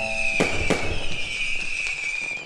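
Fireworks sound effect: two sharp bangs within the first second, then crackling under a steady high whistle.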